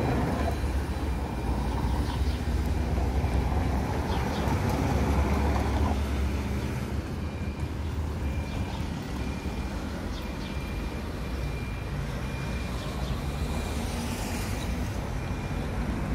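Street traffic at a city crossing: a car passes close with a heavy low rumble in the first several seconds, then lighter traffic noise. Through the second half a faint, short high beep repeats about once a second.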